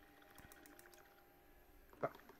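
Near silence: room tone with a few faint clicks in the first half.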